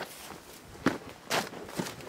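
Footsteps of a person walking on dry grass and dirt, three steps with a light scuff to each.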